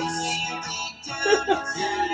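A recorded song with guitar and vocals played from a cassette through a Technics stereo receiver, picked up over the room.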